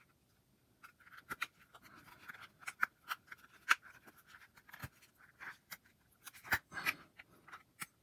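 Fingers prying and pushing the rubbery TPU layer of a ULAK Knox Armor iPod case over its hard plastic shell, giving scattered small clicks and scrapes.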